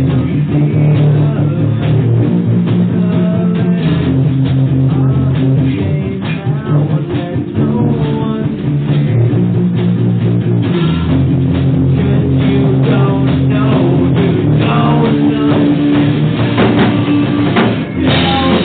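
A rock band playing an instrumental passage on electric guitars and a drum kit, loud and steady, with a short drop in level about six seconds in.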